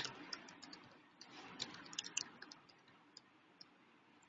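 Faint clicks of a stylus tapping on a tablet's glass screen during handwriting: one sharp click at the start, then a quick, irregular run of light ticks for about two and a half seconds.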